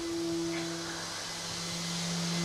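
Steady hum of woodworking workshop machinery, with an even hiss of moving air; a higher tone in the hum drops out about a second in.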